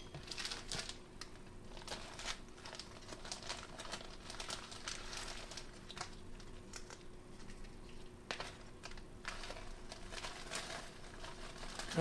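Plastic zip-top freezer bag crinkling and rustling as it is handled and opened, a faint, irregular patter of small crackles.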